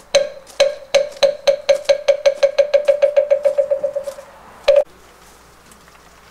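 Moktak (Buddhist wooden fish) struck in a roll: slow, hollow strokes that speed up and fade away, then a single final stroke, marking the close of the prayer.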